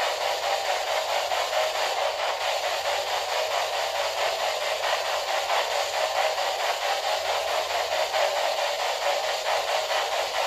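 Steady static hiss, even and unbroken, with a faint rapid flutter in it.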